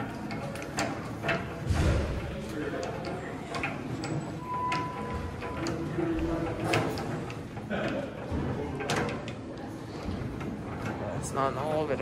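Hand crank of a landing-gear display being turned, with irregular clunks and rattles from the gear mechanism, over voices and music in a large hall.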